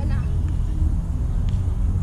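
Steady low outdoor rumble under a beach volleyball rally, with a brief call from a player at the start and a faint slap of the ball being passed about one and a half seconds in.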